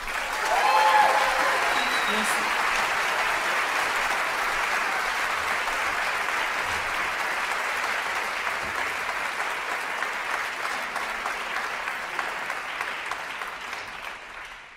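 Concert audience applauding at the end of a song, with a brief shout from the crowd about a second in; the clapping fades away near the end.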